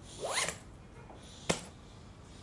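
A zip pulled quickly along a bag, a short rising rasp, followed about a second later by a single sharp click.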